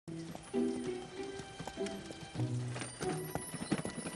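Background music with held notes, over the light clip-clop of a cartoon pony's hoofsteps.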